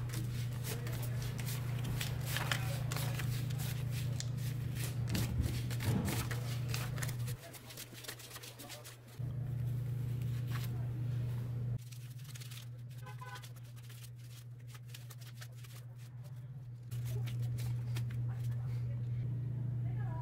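Paper banknotes rustling and flicking as a stack of bills is sorted by hand, over a steady low hum.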